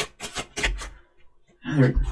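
Tarot cards being handled: a quick run of sharp card snaps and clicks in the first second, then a short pause and a brief bit of a woman's voice near the end.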